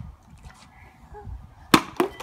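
A partly filled plastic water bottle thrown in a bottle flip hits asphalt with one sharp knock near the end. It lands on its side, a missed flip.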